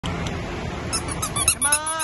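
A rapid run of short, high-pitched squeaks, about eight a second, then one longer squeak that rises slightly and falls in pitch as it dies away.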